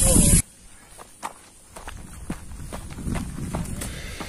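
A loud voice cuts off abruptly about half a second in. Then come quick, light footsteps of a person running and climbing concrete stairs in sneakers, a scatter of irregular soft taps.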